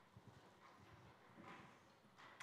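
Faint footsteps: a few soft, low steps of a person walking across the floor.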